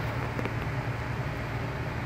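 A small electric saw's motor running with a steady hum.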